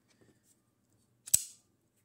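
CRKT Fossil folding knife flipped open on its ball-bearing pivot, the blade snapping into its liner lock with one sharp metallic click about a second in, after faint handling.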